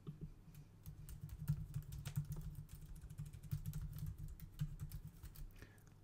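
Typing on a computer keyboard: a quick, uneven run of keystrokes that starts about a second in and stops shortly before the end.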